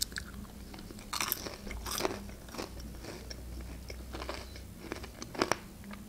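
A person biting into a pan-fried pelmeni dumpling and chewing it: a sharp bite at the start, then a handful of light crunches from the fried crust. The crunch is slight.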